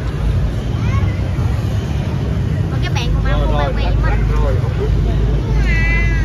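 Busy street ambience: crowd chatter over a steady low rumble of traffic, with bits of high-pitched nearby voices around the middle and again at the end.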